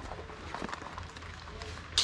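Soft knocks and rustling of a fabric bag being taken down from a hanger rack, ending in one sharp click.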